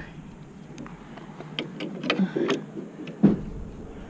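Handling noises as a rubber bungee cord is stretched and hooked onto a metal bracket on a wooden swing-set post: scattered small clicks and rustles, with one sharp click a little past three seconds in.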